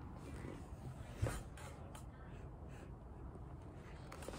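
Faint handling and rustling close to the microphone as the recording device is moved, with one soft knock about a second in.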